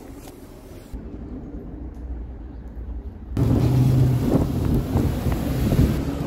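A vehicle driving by on the street, with wind noise on the microphone; the sound jumps much louder about three seconds in and carries a steady low engine hum.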